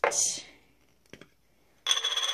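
Nail stamping tools being handled on a hard surface: a short rustle at the start, a couple of small ticks, then a brief ringing clink near the end.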